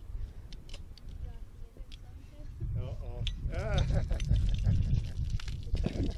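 A bottle of sparkling grape juice being opened and sprayed: a few small clicks at the cap, then a fizzing hiss from about four seconds in. Wind rumbles on the microphone throughout, and a voice calls out briefly in the middle.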